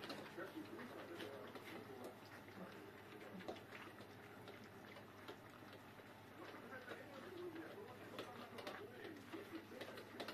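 Tibetan mastiff puppies eating side by side from metal bowls: faint chewing and small clicks against the bowls, mixed with soft whimpering, cooing puppy grunts.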